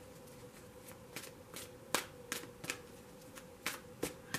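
Faint, irregular clicks and taps, about three a second, from tarot cards being handled, over a faint steady hum.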